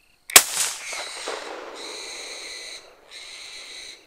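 A single rifle shot at a hog, a sharp crack about a third of a second in with a short rolling tail. It is followed by a steady, high-pitched buzzing that breaks off twice.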